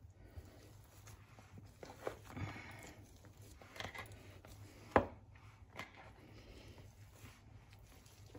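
Metal fork mashing boiled potatoes and carrots in a plastic bowl: faint, irregular soft squashing and scraping, with a sharp click about five seconds in as the fork strikes the bowl.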